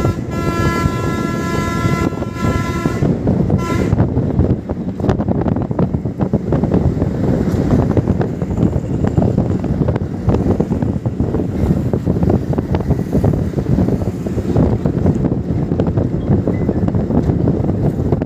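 Steady engine and road noise inside a moving bus. A multi-tone horn blares for about three seconds at the start, followed by a short toot about four seconds in.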